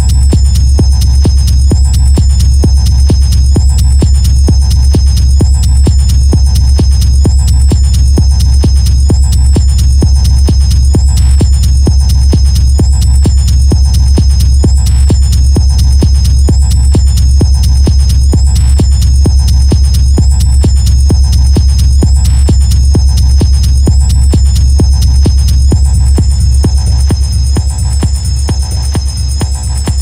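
Hard techno track in a DJ mix: a steady four-on-the-floor kick over heavy bass, with a high synth tone that wavers up and down about every second and a half. The bass thins out near the end.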